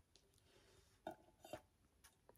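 Near silence: faint room tone with a couple of small clicks, about a second in and again half a second later.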